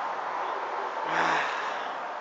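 A man's sigh about a second in: one breathy exhale with a short voiced "ah" after a sip of beer, over a steady hiss of traffic.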